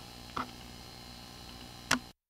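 Faint telephone-line hiss with two short clicks, about half a second in and near the end, as a recorded phone call is hung up.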